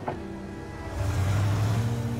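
A taxi driving off: engine hum and road noise swell up about a second in, over soft background music.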